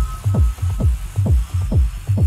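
Techno in a DJ mix: a four-on-the-floor kick drum, each kick a short falling thump, a little over two beats a second, with a low bass pulse between the kicks.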